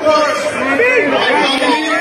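Crowd chatter: many people talking at once close by, overlapping voices with no single speaker standing out.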